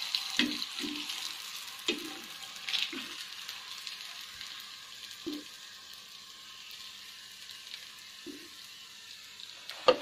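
Hot oil sizzling in an iron karahi, loudest at first and dying down as the fried pitha is lifted out, with a few short knocks of a steel spoon against the pan. Sharp clinks near the end.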